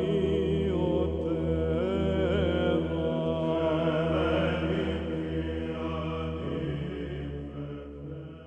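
Music: a chanting voice with a wavering, ornamented melody over a steady low drone, fading out toward the end.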